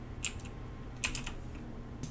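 A few computer keyboard keystrokes: one key click, then a quick pair of clicks about a second in.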